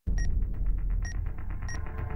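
Three short, high electronic beeps spaced unevenly, sounding as the segments of a digital clock readout light up, over a steady low rumbling drone that starts suddenly at the beginning.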